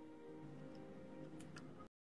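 Faint background music with a few light ticks, then the audio cuts off suddenly to dead silence just before the end.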